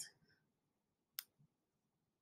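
A single computer mouse click about a second in, otherwise near silence.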